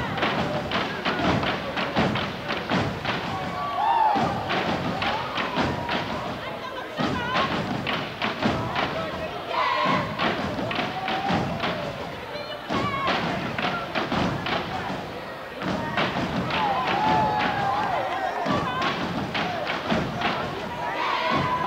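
A sorority step team stomping and clapping in unison, a fast, driving rhythm of sharp foot stomps and hand claps on a hard floor.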